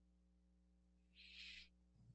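Near silence: faint room tone over a call connection, with one brief, faint hiss a little over a second in.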